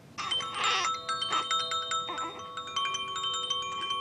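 Baby's chiming toy being shaken, small bell-like tones ringing out one after another, with a few short rattling bursts in the first half.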